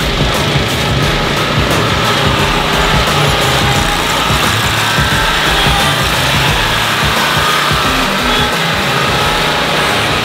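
Background music fading out over the steady running of Toro zero-turn ride-on mower engines.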